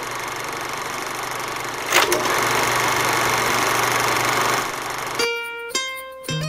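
A steady hiss starts abruptly, with a sharp click about two seconds in, after which it is louder. The hiss cuts off about five seconds in and plucked-string music begins.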